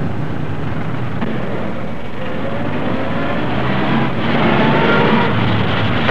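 Car engine running with road noise on an old, hissy film soundtrack, with a faint rising whine in the second half.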